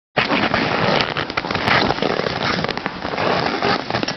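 Alpine racing skis scraping on hard, icy snow as a racer carves turns: a steady rough hiss with scattered ticks.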